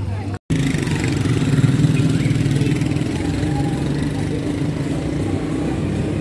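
An engine running steadily close by, a low, rapid pulsing, starting right after a brief cut in the sound about half a second in.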